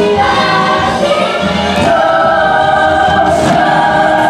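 A stage-musical ensemble singing in chorus over the show's musical accompaniment, holding a long note through the second half.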